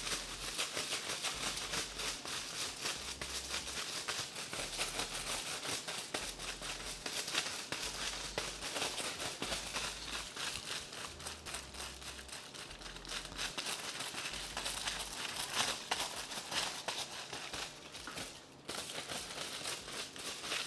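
Sheets of aluminium hair foil crinkling and rustling as they are handled and folded around bleached hair sections: a continuous run of small crackles, with a brief lull near the end.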